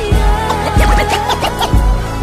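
Hip hop beat with heavy bass-drum hits and DJ turntable scratching over it.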